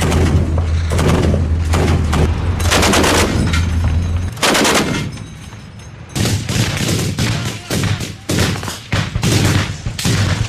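Bursts of heavy automatic gunfire from truck-mounted guns, with a short lull about five seconds in before rapid bursts resume. A steady low hum runs under the first four seconds.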